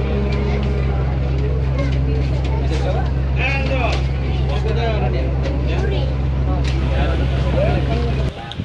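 A river passenger launch's engine drones steadily and low while many passengers talk and chatter around it.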